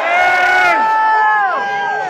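Audience members shouting long, held cheers in reply to the stage, a couple of voices overlapping and trailing off near the end.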